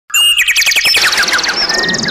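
A bird trill: a rapid run of chirps, about ten a second, falling steadily in pitch.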